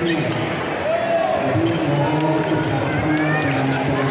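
Table tennis ball clicking off bats and bouncing on the table during a rally, over the steady chatter of a crowd of voices.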